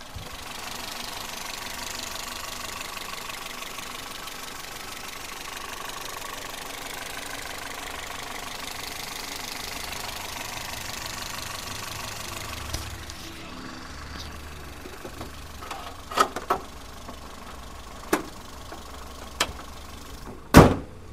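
Toyota Etios Liva 16-valve four-cylinder petrol engine idling steadily, heard close over the open engine bay; it sounds smooth. It is fainter from about two-thirds of the way through, and a few sharp clicks and knocks come near the end.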